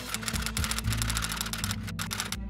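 A rapid run of typing key clicks, stopping just before the end, over background music with a steady bass line.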